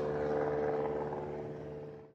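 A propeller airplane engine droning steadily, fading out toward the end.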